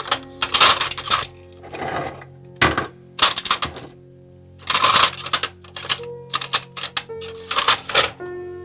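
Chrome guitar tuning machines clattering and clinking against each other and a clear plastic parts drawer as they are handled and dropped in, in about seven quick bursts. Soft piano background music underneath.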